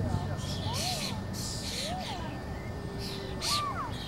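Several short, harsh bird calls, caw-like, over faint background voices.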